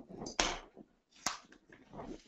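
Sheet of heat transfer vinyl on its backing rustling and crinkling as it is handled and peeled, in a few short rustles, with a sharp click just over a second in.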